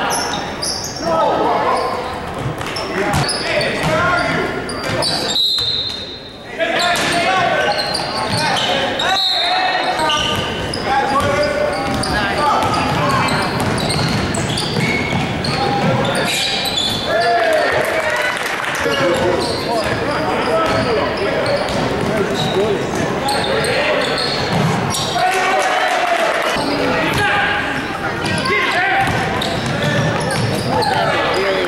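Indoor basketball game: spectators' voices and shouts mixed with basketballs bouncing on a hardwood court, echoing around a gymnasium.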